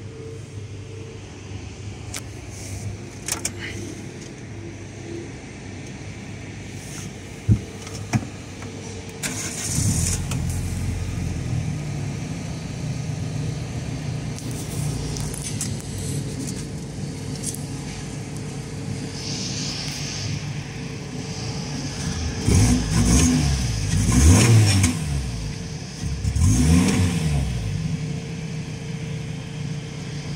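Lotus Elise S3's Toyota 1.6-litre four-cylinder engine started about nine seconds in, after two sharp clicks, and settling to a steady idle near 1,000 rpm. Near the end it is revved three times in quick succession, the pitch rising and falling each time.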